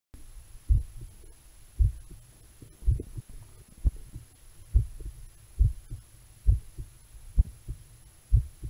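Human heartbeat picked up through an analogue stethoscope's chest piece by a lavalier microphone pushed into its rubber tubing. Low, dull beats come about once a second, each followed shortly by a fainter second beat: the lub-dub of the two heart sounds.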